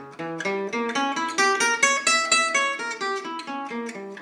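Gypsy jazz acoustic guitar with an oval soundhole playing a quick single-note G diminished seventh arpeggio. The notes climb steadily in pitch for about two seconds, then step back lower near the end.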